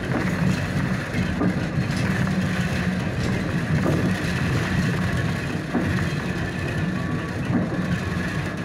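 Cabin noise of a city bus on the move: a steady low hum from the drivetrain mixed with tyre and road noise.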